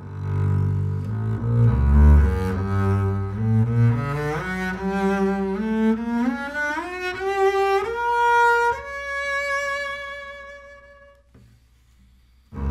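Double bass played with the bow: a run of notes climbing step by step from the low register up to a high note, held from about nine seconds in and fading away shortly before the end.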